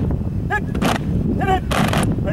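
A football team chanting in a huddle: a voice shouts "Hit!" twice, and each shout is answered by the players' loud, sharp unison clap.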